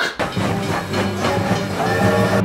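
A train running on rails, a dense rumbling noise with a clattering beat, over background music.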